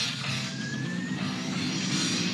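Background music mixed with a pack of quad bike engines revving at a race start, with a slowly rising pitch.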